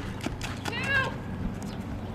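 A short high-pitched voice-like call, rising and falling in pitch, about a second in, with a few sharp knocks around it.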